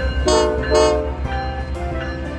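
Two short blasts of the CPKC Holiday Train's locomotive horn, one right after the other about a second in, over background music with a steady beat.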